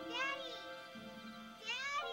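Sustained music chords with two short, high wailing cries over them, each rising and then falling in pitch, about a second and a half apart.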